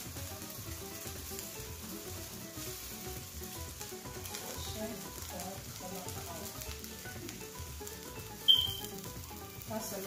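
Rice sizzling in a stainless steel pot as it is stirred and tossed with a wooden spatula, with a steady frying hiss and small scraping clicks. About eight and a half seconds in, one brief sharp high-pitched clink or squeak stands out as the loudest sound.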